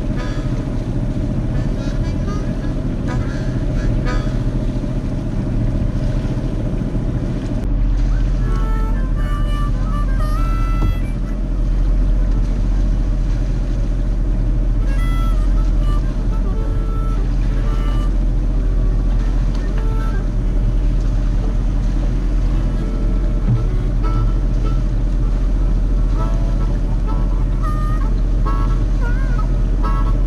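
Sailing yacht's inboard diesel engine running steadily under way, a loud low drone, with background music and a singing voice over it from about eight seconds in.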